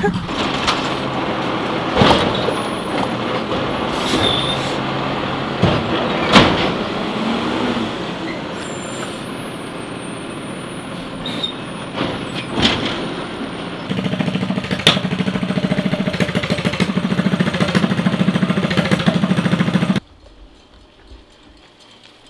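Concrete mixer truck's diesel engine running close by, with several sharp air-brake hisses. Later a steadier pulsing engine note takes over and cuts off suddenly about two seconds before the end.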